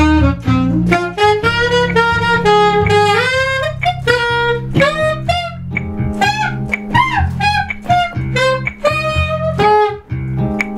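Alto saxophone playing quick jazz lines of short notes, some bent in pitch, over a band accompaniment with a bass line underneath.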